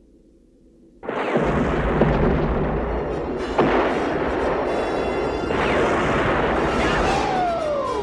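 Film sound effect of a large explosion that breaks out suddenly about a second in and goes on as a long rumble with sharp cracks, mixed with orchestral score. Falling sweeps come near the end.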